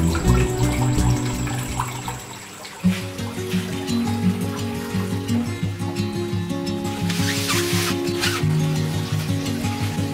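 Background music, which dips and changes about three seconds in, with a faint trickle of water beneath it early on. A brief noise cuts through the music about seven seconds in.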